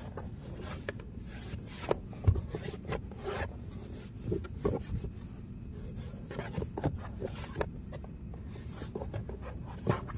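Paper towel rubbing and scraping against the hard plastic of a car door pocket in short, irregular strokes, with the odd light knock of the hand against the panel.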